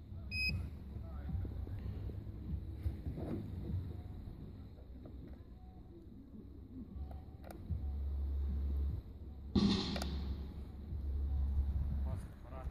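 A short electronic beep from the lightbar's flash-pattern controller as a button is pressed, followed by low rumbling noise and handling sounds on the microphone, with a brief loud rustle about ten seconds in.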